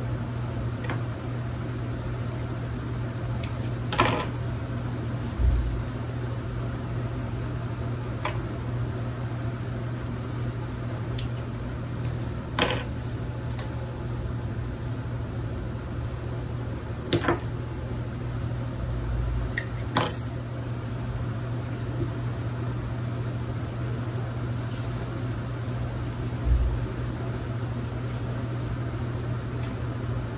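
Satin fabric pieces handled on a sewing table, with a few sharp clicks and soft knocks scattered through. A steady low hum runs underneath.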